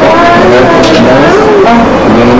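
A voice singing a melody over the report footage, with held notes that glide smoothly up and down.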